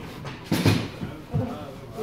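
Faint voice sounds between words, with a short breathy noise about half a second in.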